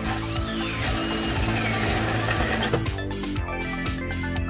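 Background music with held notes and a steady pulse, and a sweep falling in pitch through the first second.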